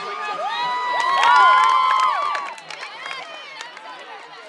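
Crowd cheering, with many high voices whooping at once; it swells to a peak about a second in and dies down before the end.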